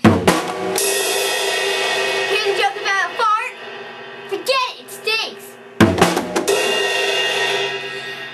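Drum kit played as a joke sting: a sharp drum hit followed by a long ringing cymbal crash, then a second hit and crash about six seconds in.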